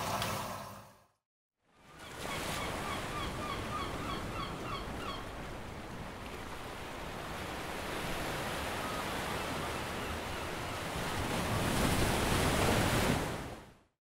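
Ocean surf washing over rocks, a steady rush of waves that swells near the end and then fades out. A run of short bird calls sounds over it a few seconds in. It opens with the last of a toilet flush draining away, followed by a moment of silence.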